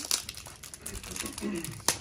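Packaging crinkling and rustling in the hands as a small cardboard perfume box is turned over and opened, with many quick small clicks and scrapes.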